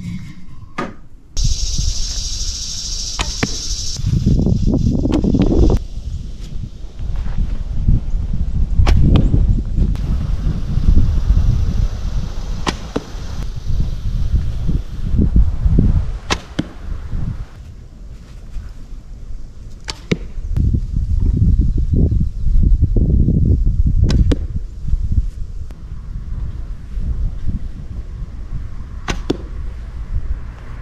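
Hand-made Osage orange longbow, drawing 61 pounds, being shot again and again: a sharp crack of the string on release every few seconds, with wind rumbling on the microphone.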